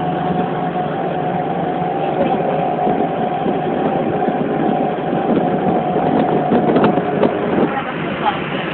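A vehicle engine running steadily, with a steady high hum that stops near the end, under people's chatter.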